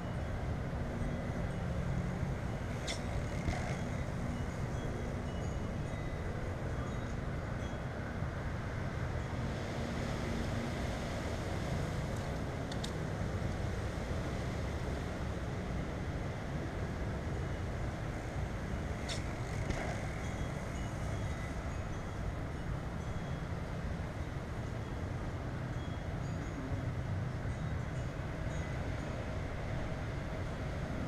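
Steady low outdoor rumble with a few faint sharp clicks.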